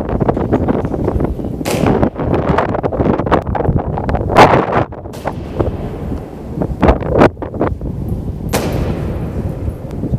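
Honour guards' boots striking a stone floor as they march, heavy sharp steps with a long echo in a domed hall. The loudest strikes come about four and a half seconds in and again near nine seconds.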